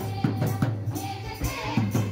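Live folk dance music: a group of girls and women singing into microphones, with tambourines jingling on a steady, quick dance beat.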